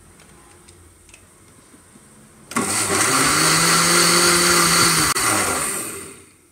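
Electric blender switched on about two and a half seconds in, running loudly for about three seconds as it churns cultured cream in ice-cold water to separate out butter; its motor hum rises as it spins up and falls away as it winds down near the end.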